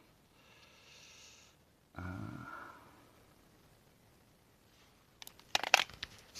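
Handling noise: a quick cluster of sharp clicks and knocks near the end as the phone and the infrared thermometer are moved, after a mostly quiet stretch.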